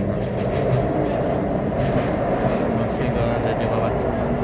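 Taipei Metro C301 steel-wheeled metro train running into a station, heard from on board: a steady rumble of wheels on rail.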